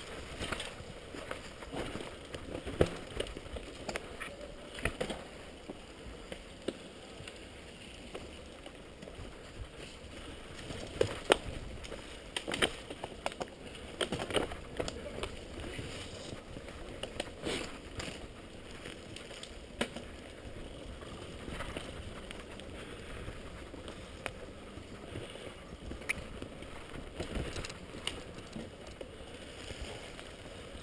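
Mountain bike ridden fast over a bumpy dirt forest trail: a steady rolling noise from the tyres, broken by frequent sharp knocks and clatters as the bike goes over roots and bumps.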